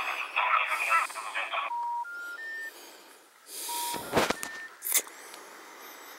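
A phone's small speaker plays a tinny tune that cuts off about one and a half seconds in. Three short beeps follow, rising in pitch: the special information tone that a telephone network plays before a recorded announcement, such as a number not in service. The beeps start again about a second later, and sharp knocks from handling the phone come around four and five seconds in.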